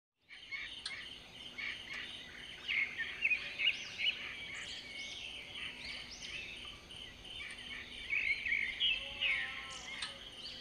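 Several birds chirping and calling at once, a busy overlapping run of short high notes, over faint steady outdoor background noise.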